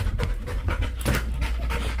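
Dog panting in quick, short breaths, several a second, excited at being readied for an outing.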